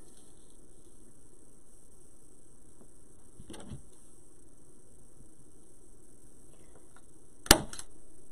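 Manual staple gun firing once near the end with a single sharp snap. Before it, a softer clatter as the stapler is picked up off the cutting mat.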